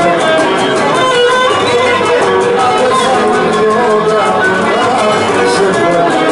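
Cretan lyra bowing a traditional dance melody over rhythmic laouto strumming.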